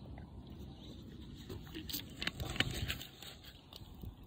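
Handling noise from a phone whose lens is covered: a low rubbing rumble, with a cluster of knocks and scrapes from about two seconds in that are the loudest part.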